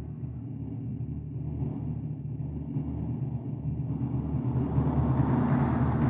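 Low synthesized rumble swelling slowly louder, the sound effect under an animated logo reveal.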